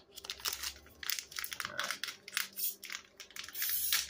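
Clear plastic packaging pouch crinkling and crackling in the hands as it is handled and pulled open, in irregular crackles.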